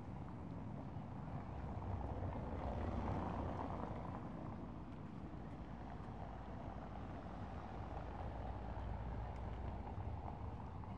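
Steady outdoor street ambience: a broad rumble of distant traffic, swelling slightly about three seconds in as if a vehicle passes.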